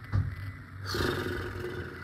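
A man's drawn-out, rough, breathy groan of about a second, starting a little under a second in, as if bracing himself.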